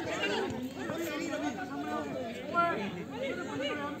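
Several people talking and calling out at once, overlapping chatter, with one louder call about two and a half seconds in.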